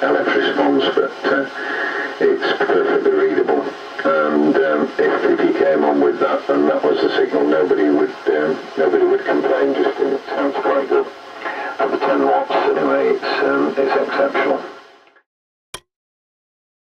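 A voice on the amateur-radio net coming through the loudspeaker of a homebrew octal-valve superhet receiver, with the narrow, boxy tone of a received voice. It fades out just before the end, and a single click follows.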